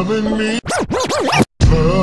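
Slowed, chopped-and-screwed R&B song broken by a DJ record scratch about half a second in: the pitch swoops down and up several times for just under a second, then the sound cuts out briefly before the song comes back.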